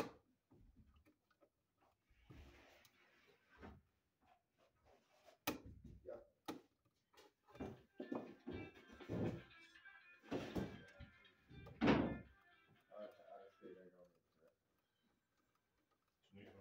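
Small handling sounds from a screwdriver and stiff 12/2 copper wire being worked at a plastic electrical box: scattered sharp clicks, with rougher scraping and knocking in the second half and the loudest knock near the end.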